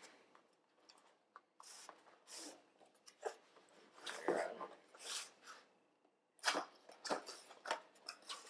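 Cardboard packaging being handled: a small box slid out of its printed cardboard sleeve and its lid flap pried open, heard as a series of short, soft scrapes and rustles.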